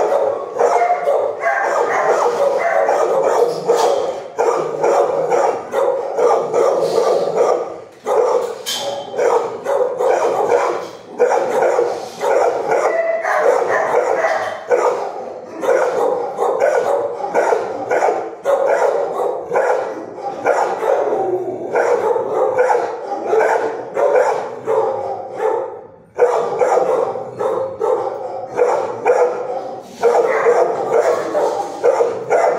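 Many dogs barking at once in a shelter kennel block, a loud, continuous overlapping chorus of barks with only brief lulls, around 8 and 26 seconds in.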